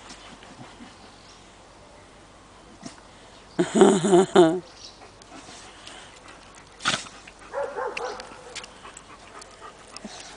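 A dog whining: a loud, wavering cry about a second long, about four seconds in. A sharp click follows a few seconds later.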